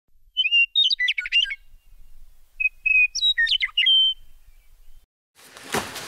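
A songbird singing two short phrases about two seconds apart, each a few clear whistled notes running into a quick warble.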